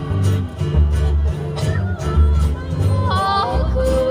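Hawaiian string band playing: ukuleles and guitars strummed over a steady bass line. A voice sings a short wavering phrase about three seconds in, and a long held note starts just before the end.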